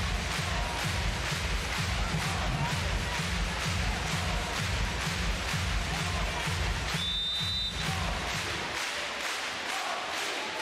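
Arena music over the stadium speakers with a steady bass beat, over crowd noise. About seven seconds in comes a short, high referee's whistle, the signal to serve, and the music's beat cuts out about a second later.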